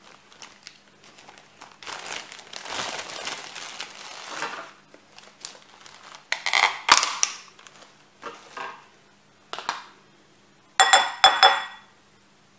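Plastic bag crinkling and rustling in several bursts while a honey jar is handled. Near the end a metal spoon clinks against the jar, with a short ringing clatter.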